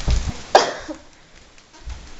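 A single short cough about half a second in, after a few low thumps of footsteps and camera handling.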